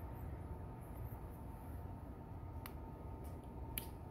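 Quiet room tone with a steady low hum and two faint clicks in the second half.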